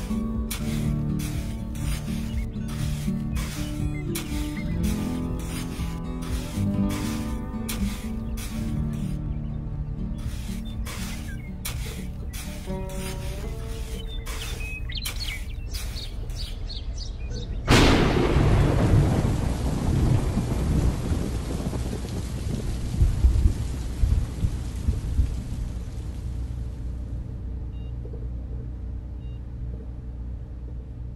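Background music with a steady beat, cut off about 18 seconds in by a sudden loud rumble of thunder with a rain-like hiss that carries on, swells a few times and slowly fades.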